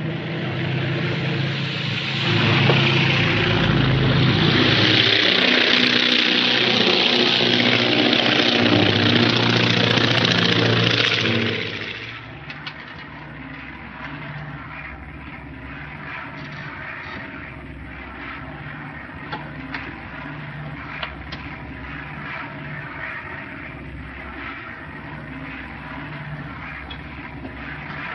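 Propeller airliner engines at takeoff power: a loud drone with a strong rushing hiss for about twelve seconds, then a sudden drop to a quieter, steady engine drone as the plane flies on.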